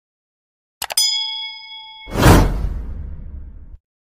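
Subscribe-button animation sound effects: a quick double mouse click about a second in, straight into a bell-like notification ding that rings for about a second, then a whoosh that swells and fades out near the end.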